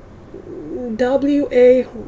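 A woman's voice speaking slowly in drawn-out, low syllables, starting about half a second in, likely reading the words before 'regulations' in a tweet.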